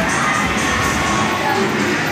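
Steady, loud din of an indoor children's arcade: electronic music and jingles from the game and ride machines mixed with children's voices and crowd chatter.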